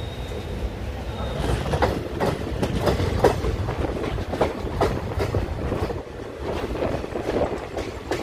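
Moving passenger train heard from an open coach door: a steady low rumble of the running gear, with the wheels clacking over rail joints and points in an uneven run of sharp clicks from about a second and a half in.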